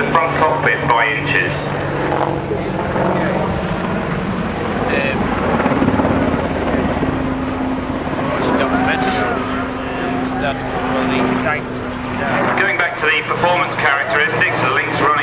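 AH-64 Apache attack helicopter flying a display overhead: steady engine and rotor drone with a low hum that holds for several seconds and drops away near the end. Voices can be heard over it.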